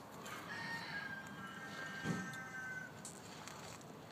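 A rooster crowing once, one long call of about two and a half seconds that falls slightly in pitch, with a dull thump about two seconds in.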